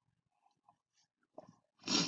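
Near silence broken by a few faint computer keyboard or mouse clicks, then a short louder noise near the end.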